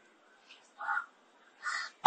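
A bird calling twice, faintly: two short calls, one about a second in and one near the end.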